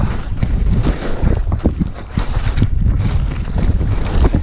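Wind buffeting the camera microphone during a fast downhill ski run, a heavy, uneven low rumble, with skis scraping and chattering over packed, choppy snow.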